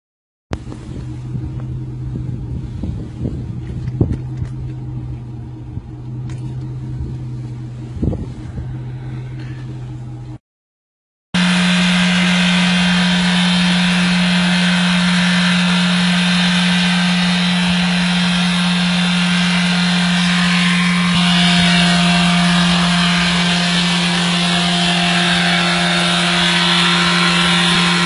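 Car engines running steadily in two separate clips split by a sudden cut about ten seconds in. The first is a moderate steady hum with a few scattered clicks. The second is much louder, a strong steady drone with a rough noisy layer over it.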